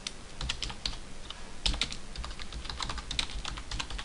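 Computer keyboard typing: quick, irregular key clicks, several a second.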